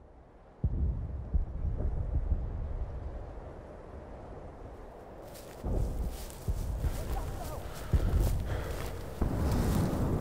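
Trailer sound design: a deep low boom under a second in with a long rumbling tail, then several more low booms in the second half. Crackling noise runs under the booms from about five seconds in.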